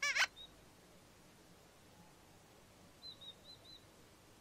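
A brief, high-pitched squeaky call at the very start, then near quiet. Near the end come four faint, quick, high chirps like a small bird.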